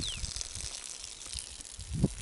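Wind rumbling unevenly on the camera microphone, with a faint hiss over it; a brief high whistle falls in pitch right at the start.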